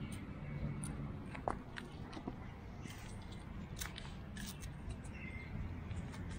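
Light handling noises, scattered small clicks and rustles, as a hook-and-loop strap is wrapped and pressed shut around a bicycle handlebar and frame tube, with one sharper click about a second and a half in.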